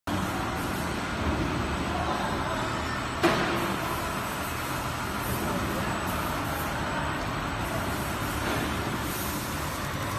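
HSD 320 slitting machine with rotary die-cutting stations running steadily, its label web feeding through the rollers, with one sharp knock about three seconds in.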